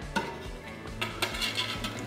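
Quiet background music under a few light clicks of a metal spatula on the steel griddle top.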